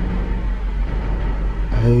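Steady low rumble of a car heard from inside its cabin while it stands in traffic. A man's voice starts near the end.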